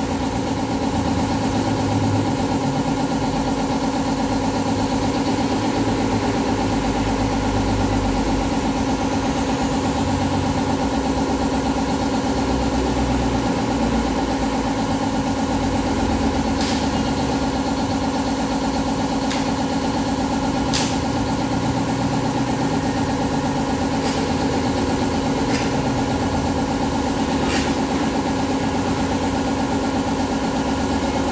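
A motorcycle engine idling steadily, with an even hum that does not change. A few short sharp clicks come in the second half.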